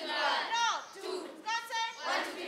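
Many children's voices shouting a chant together in unison: short held high calls and a falling yell, repeated in phrases.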